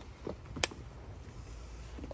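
Hoof trimming shears snipping a goat's hoof: a softer clip and then one sharp, loud snip about half a second in.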